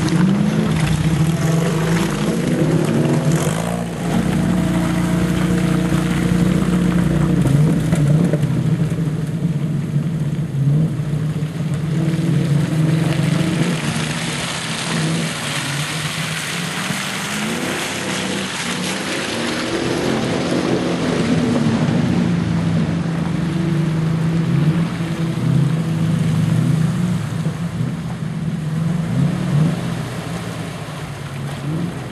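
Off-road 4x4 engines working at low speed through mud, chiefly a Mercedes G-Wagen's, the revs rising and falling again and again as the driver feeds in throttle; the revving is strongest near the start, about two-thirds of the way in, and near the end.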